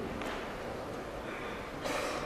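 A person sniffing sharply through the nose twice, a faint sniff a quarter second in and a louder one near the end, over the steady room noise of a large hall.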